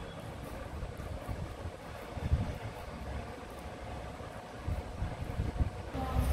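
Low, uneven rumble of air buffeting the microphone, swelling briefly about two seconds in.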